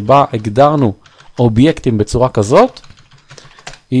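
A few computer keyboard keystrokes, heard as light ticks in the pauses of a man's speech, which is the loudest sound.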